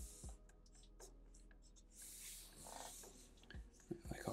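Faint scratching of a felt-tip marker on paper: short quick strokes laying down feather texture lines, with a longer run of strokes about two seconds in.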